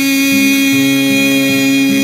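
A male voice holds one long, steady sung note over acoustic guitar accompaniment.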